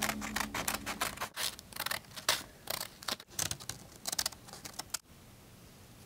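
Scissors cutting through thin card in a quick run of short snips, stopping about five seconds in.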